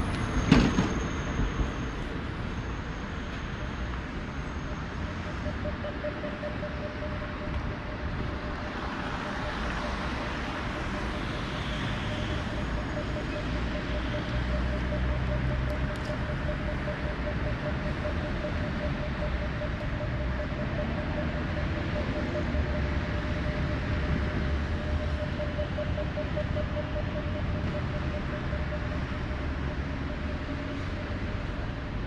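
Düwag GT8S tram standing at a stop, with a steady high hum setting in about five seconds in over a low rumble of traffic. A single loud knock sounds about half a second in.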